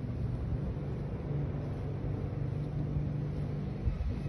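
A heavy diesel engine idling steadily: a low, even hum with a constant drone.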